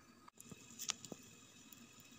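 Faint bubbling of simmering turkey broth in a pot, with a few small pops from bubbles bursting under the foam near the middle.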